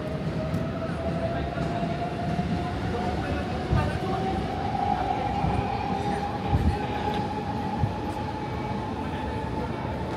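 An electric train runs on nearby tracks with a steady rumble, its motor whine rising slowly in pitch. A few dull thumps come through partway in.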